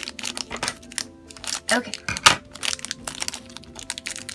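Crinkling of a plastic blind bag being squeezed and opened by hand, with one sharp snap a little past halfway.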